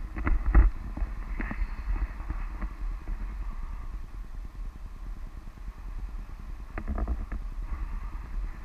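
Wind buffeting an action camera's microphone in paraglider flight, a steady low rumble. A few sharp knocks cut through it, the loudest about half a second in and a cluster near seven seconds.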